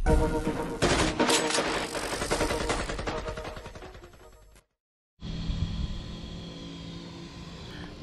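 Intro sound effect: a rapid, machine-gun-like rattle over music that fades away over about four seconds and cuts to silence. About half a second later a steady, quieter background sound comes in.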